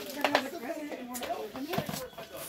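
Indistinct voices of several people talking in the background, with a few short sharp clicks or rustles, the loudest about a quarter of a second in.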